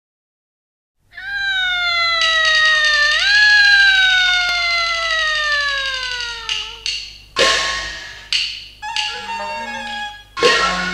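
Qinqiang opera accompaniment starting up: a single long, high held note that slides slowly downward with one upward scoop, then sharp percussion crashes and shorter instrumental phrases from about seven seconds in.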